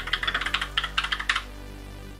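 Fast typing on a Redragon K656 Garen Pro mechanical keyboard with Redragon's tactile purple switches: a quick run of key clicks that stops about one and a half seconds in. Soft background music runs underneath.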